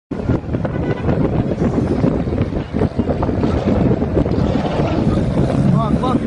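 Wind buffeting the microphone of a moving car, over the engine and tyre noise of cars driving close together on a multi-lane road. A short rising-and-falling call, like a voice, comes near the end.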